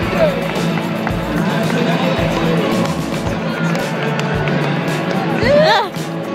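Music playing over a football stadium's public-address system, with crowd noise from the stands; near the end a voice calls out loudly.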